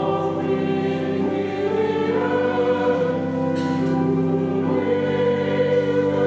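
Church choir singing sustained chords that move to a new chord every second or two.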